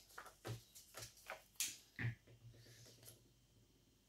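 Faint paper crafting: a glue stick rubbed over paper and a coloring-book page laid onto a journal page and pressed down, heard as a few soft rustles and light taps with one sharper click.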